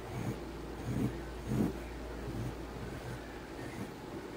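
Graphite pencil sketching on paper: a few soft strokes, the strongest about a second and a half in, over a steady low hum.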